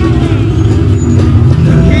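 A loud, steady low rumble, with faint music above it.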